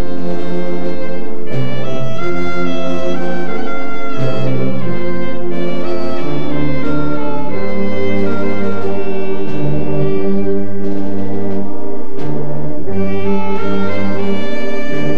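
A slow orchestral piece with brass and strings playing loud, held chords that change every second or two.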